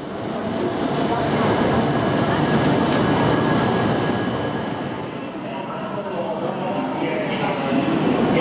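Busy station platform ambience: many people talking over the steady hum of a Shinkansen train standing at the platform, with a brief high-pitched sound about two and a half seconds in.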